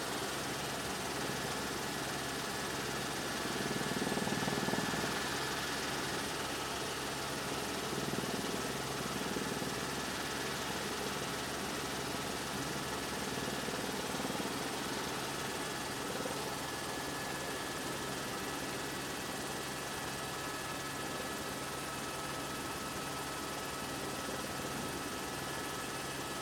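Steady engine drone of a light aircraft, heard from inside its cabin, holding an even level with a slight swell about four seconds in.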